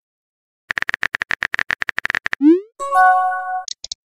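Synthetic phone-keyboard typing clicks in a quick run of about nine taps a second, then a short rising pop and a brief chime chord with a couple of high blips: a text-message typing-and-send sound effect.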